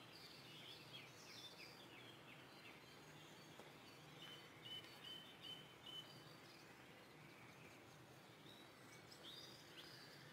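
Faint birdsong over a quiet background: scattered short chirps, a run of about five short, evenly spaced notes a little before the middle, and a few more chirps near the end.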